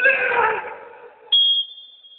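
Men's shouts echoing in a sports hall, then one short, sharp referee's whistle blast about a second and a half in, stopping play for a foul after a player goes down.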